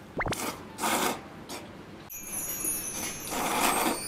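A man eating with his mouth close to the microphone, biting and chewing a piece of seared pork in a series of short noisy bursts. From about two seconds in, a high tinkling sound effect joins in and keeps going.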